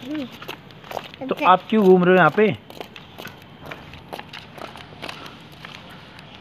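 A person's voice speaking one short phrase about a second and a half in, over a faint steady background hiss with small scattered clicks.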